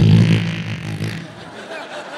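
A New Year's Eve horn blast sounded into the microphone: one loud, low, steady note about a second long, followed by audience laughter and chatter.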